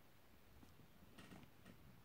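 Near silence, with a few faint, short clicks a little past a second in.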